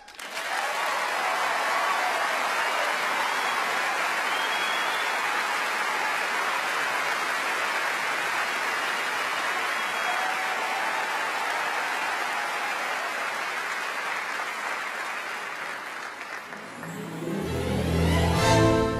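A large concert audience applauding. The applause breaks out all at once and holds steady, then thins near the end as the orchestra's brass and low instruments start up and swell.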